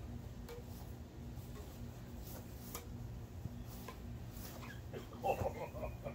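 A badminton rally: rackets striking a shuttlecock, a handful of light, sharp hits spread over the seconds, over a steady low background hum. Near the end a short burst of voice is the loudest sound.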